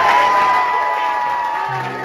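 Live house band playing a short sting: a long held note rings and slowly fades, and a low bass note comes in near the end.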